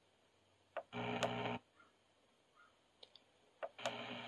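Bose Acoustic Wave CD-3000 radio seeking up the AM band, muted between stops. Twice it lets through a short burst of sound, each just after a click: about a second in, and again near the end.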